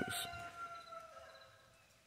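A distant, drawn-out pitched call or tone, sliding slightly down in pitch as it fades out over about a second and a half.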